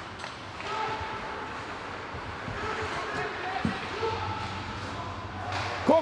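Ice hockey arena during play: an echoing hall with scattered voices of spectators and players. A single knock comes about three and a half seconds in.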